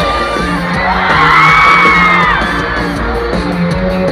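Live pop-rock band playing loud through a stadium PA, heard from within the audience, with fans cheering and yelling over it. A high held note swells over the music about a second in and falls away just over a second later.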